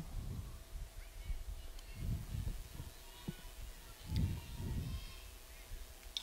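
Faint outdoor ballfield ambience: distant murmuring voices rising twice, with a short faint knock in between.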